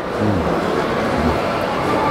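A man eating a bite of sweet pastry, with a short hummed 'mm' just after the start and a fainter vocal sound about a second in, over the steady din of a large, busy restaurant hall.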